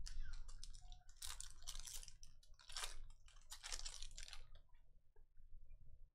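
Foil trading-card pack being torn open and its wrapper crinkled by hand: a run of irregular crackles that thins out to a few faint clicks after about four and a half seconds.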